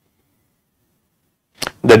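Near silence, a pause between spoken sentences. Near the end comes a brief click, then a man's voice starts speaking.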